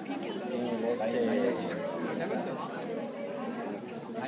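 Several people chattering at once, their voices overlapping into an indistinct murmur of conversation.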